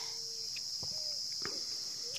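A steady, high-pitched insect chorus from the riverside vegetation, with a few faint, short whistled notes and a couple of light clicks over it.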